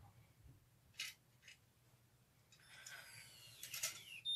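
Faint handling of a Curl Secret automatic hair curler as hair is fed into it: two short plastic clicks about a second in, then a faint rising whir with a few clicks near the end.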